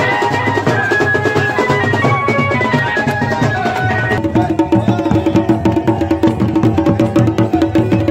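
Folk procession band playing: drums beaten in a fast, dense rhythm under a wind-instrument melody. About four seconds in, the steady drone of bagpipes (mashakbeen) comes in and holds to the end.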